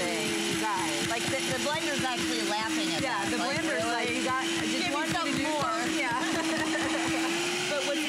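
DASH high-speed blender motor running at a steady pitch while it grinds whole coffee beans, then winding down with a falling pitch near the end.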